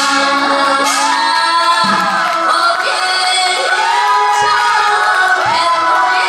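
A woman singing a Korean folk-style song over amplified music, her voice gliding up and then down in three long arching phrases.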